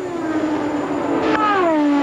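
IRL Indy car V8 engines at racing speed passing the trackside microphone, the pitch dropping as each car goes by. There are two pass-bys: one at the start and a second, sharper drop about a second and a half in.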